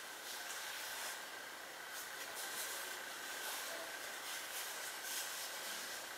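Faint steady hiss of room tone, with a thin steady high tone running through it and no distinct events.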